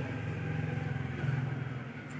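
A low, steady engine hum, its note shifting slightly a little past halfway.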